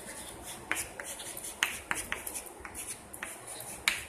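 Chalk writing on a blackboard: a string of about eight sharp taps and short scratchy strokes at irregular spacing.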